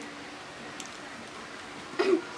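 Quiet room tone: a steady hiss with a faint tick a little under a second in.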